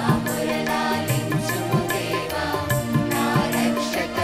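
Mixed choir of men and women singing a Telugu Christian devotional song in unison. It is accompanied by sustained instrumental notes and a steady, regular drum beat.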